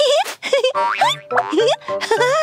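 Cartoon boing sound effects: a run of rising springy sweeps about twice a second, over upbeat children's background music.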